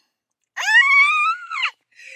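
A person's voice holding one very high, squeal-like note for about a second, starting about half a second in, its pitch edging upward before it drops off.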